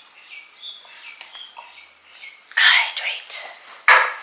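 Close rustling of a sleeve and hand brushing against the camera as it is reached for, loudest in two bursts in the second half, with a sharp knock on the camera just before the end. A few short, faint high chirps come in the first half.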